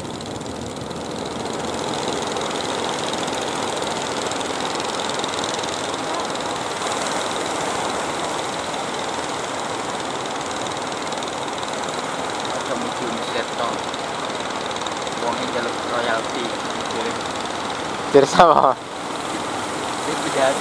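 Steady wash of waves breaking on the shore.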